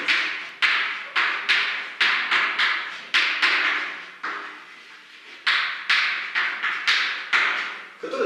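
Chalk writing on a blackboard: a quick run of sharp taps and short scratchy strokes as letters are chalked on, about two a second, with a brief pause a little past the middle.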